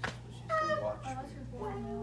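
A short, high-pitched voice-like call about half a second in, with fainter pitched sounds near the end, over a steady low electrical hum.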